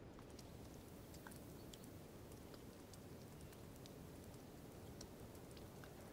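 Faint playback of a field recording of water dripping from a cliff in a gorge: scattered small drip ticks over a soft even hiss, the recorder's high-end self-noise, heard through a high-cut EQ filter.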